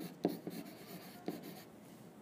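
Stylus writing on a tablet screen: a few light taps and faint scratching as handwritten letters are drawn.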